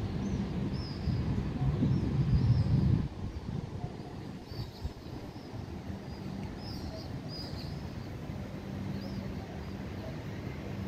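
Outdoor ambience: small birds chirping briefly every so often over a low rumbling background noise. The rumble is loudest for the first three seconds, then drops to a steady, quieter level.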